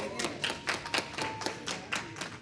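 Congregation clapping: many quick, irregular hand claps from several people.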